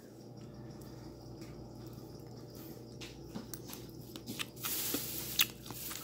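A person eating a forkful of omelette: quiet at first, then soft chewing and mouth sounds with a few small clicks in the second half, over a faint steady hum.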